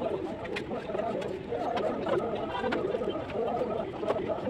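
Brick-laying at a masonry wall: a few sharp taps of a steel trowel on brick and mortar, over a low wavering sound that runs throughout.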